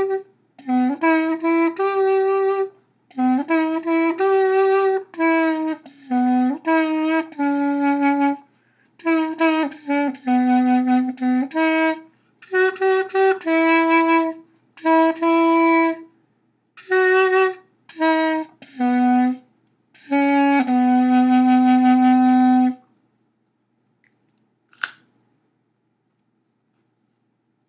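Carrot clarinet, a hollowed carrot with finger holes played through an alto saxophone mouthpiece and reed, playing a tune in short phrases of separate reedy notes. It ends on a long held low note a few seconds before the end, and a single brief click follows.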